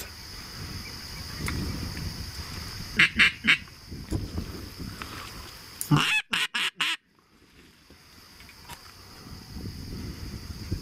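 Teal call (a hand-blown duck call) blown close by in short, sharp quacking notes: three quick notes about three seconds in and another about six seconds in. It is calling to a flock of teal in flight.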